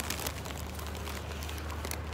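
Steady low background rumble outdoors, fairly quiet, with a few faint crackles.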